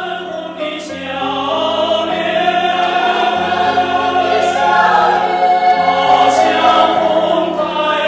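Choral music: voices singing held chords that change slowly, growing louder.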